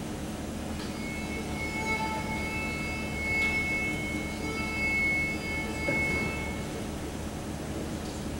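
Faint sustained high notes from a few band instruments, starting and stopping at different moments over a steady background hum.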